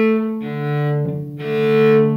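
Cello bowed on the open A string, then the open D string below it, then both strings sounding together as a fifth, the last note the loudest.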